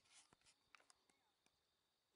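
Near silence, with a brief soft hiss just after the start and a few faint scattered clicks.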